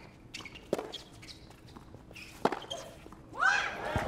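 Tennis ball struck back and forth in a rally on a hard court: sharp pops of racket on ball, the two loudest about 1.7 seconds apart, with softer footfalls between. A short rising vocal cry comes near the end.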